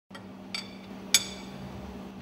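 Steel ring spanner clinking against the fixing nuts of a fuel pump top cover: three short ringing metal clinks, the third the loudest, over a steady low hum.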